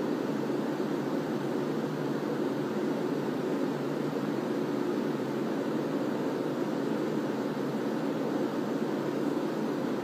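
Steady, unbroken low hum with hiss: the room's constant background noise, with no other events.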